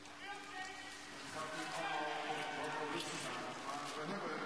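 A man's voice giving live race commentary, rising in level about a second in.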